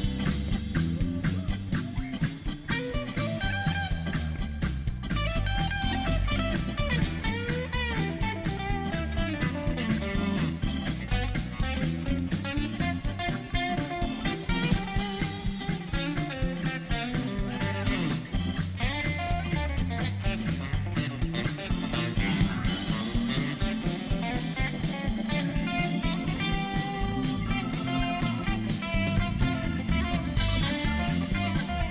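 Live blues-rock band playing an instrumental passage: an electric guitar plays a lead line of bent, gliding notes over electric bass and a drum kit keeping a steady beat.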